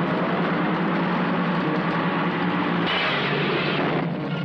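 Horror film trailer soundtrack between narration lines: a loud, dense rumbling wash over a steady low drone, with a brighter hiss joining about three seconds in.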